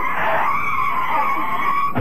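A steady high screech lasting about two seconds, cutting in suddenly: a comic studio sound effect played as a performer is shoved into a prop garbage truck.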